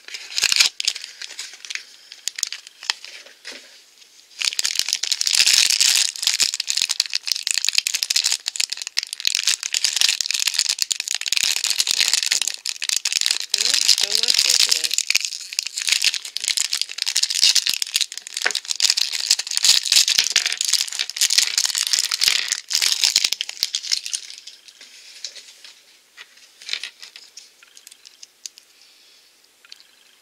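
Shiny plastic blind-pack wrapper crinkling and crackling loudly with many small clicks as it is worked and torn open by hand, from about four seconds in until it dies down a few seconds before the end. Before that, light clicks of a small cardboard blind box being opened.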